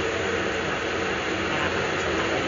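Steady machinery background noise: an even, constant rushing hum filling the room with no breaks.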